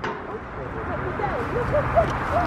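Faint, distant voices of children and adults, over a steady low outdoor rumble.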